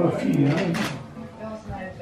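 Indistinct voices talking in a room, with no clear words.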